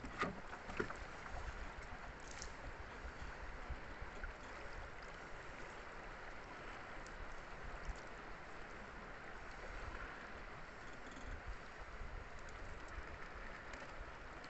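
A wet gill net being hauled in by hand over the side of a small wooden boat, water dripping and splashing off the mesh into the river, with a couple of knocks against the boat in the first second.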